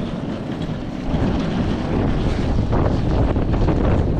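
Strong gusting wind buffeting the camera's microphone: a loud, low rumbling rush that swells about a second in.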